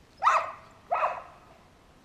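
A dog barking twice, the two barks about two-thirds of a second apart.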